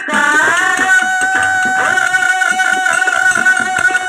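Live Kannada folk song: voices singing into microphones over a harmonium, with a hand drum keeping the beat. About a second in, a single note is held steadily to the end.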